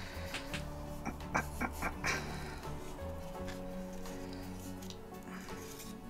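Soft background music of held chords, with light clicks and rustles of a deck of cards being slid out of its cardstock paper wrap.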